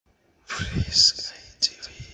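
A breathy whispered voice with sharp hissing sibilants. It starts about half a second in and fades away near the end.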